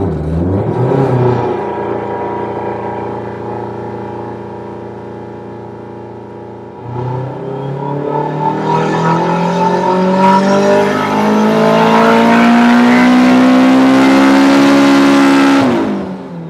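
Turbocharged Honda K20A2 four-cylinder in an EK Civic running under load on a Dynapack dyno. It holds steady near 3,000 rpm for the first several seconds. From about seven seconds in it pulls at full throttle, its pitch climbing steadily and getting louder up to about 8,400 rpm. Just before the end the throttle is lifted and the engine drops off sharply.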